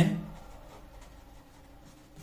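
Pen scratching faintly on paper as a word is written by hand.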